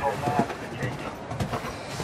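Indistinct talking in the background, with a cantering horse's hoofbeats thudding on the arena's sand footing.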